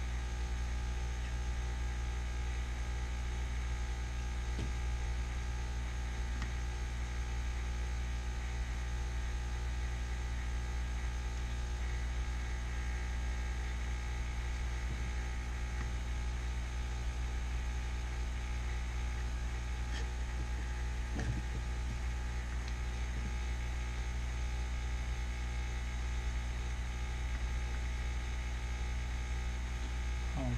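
Steady electrical mains hum with a stack of overtones, with a few faint clicks.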